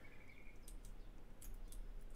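A few faint, sharp clicks from computer input at a desk, in small groups, over low room hum.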